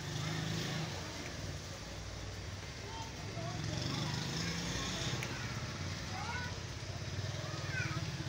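Background street noise: a motor vehicle engine running with a low rumble, and faint indistinct voices.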